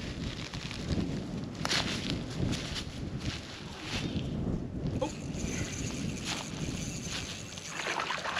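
Wind rumbling steadily on the microphone, with a few faint short clicks.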